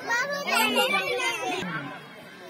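A crowd of spectators talking and calling out over one another, with high young voices among them, gradually getting quieter.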